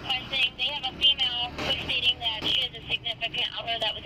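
A dispatcher's voice over a police radio, relaying a request about a woman whose partner was in the crash, with the narrow, thin sound of a radio speaker.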